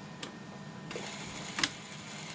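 Record player starting a 78 rpm shellac record: a couple of small clicks, then from about a second in the steady hiss of the stylus in the run-in groove, with one louder click near the end, just before the music starts.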